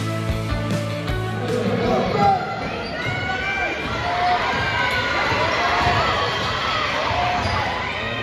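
Basketball game play in a gym: a ball dribbling on the hardwood court amid crowd voices and shouts. Music plays at first and stops about two seconds in.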